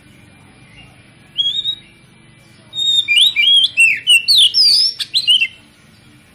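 Oriental magpie-robin singing. A short rising whistle comes about a second and a half in, then a loud run of quick, varied sweeping notes lasting about three seconds.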